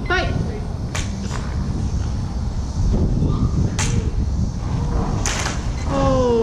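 Sharp cracks of dueling lightsaber blades striking each other, four separate hits across a few seconds, over a steady low rumble.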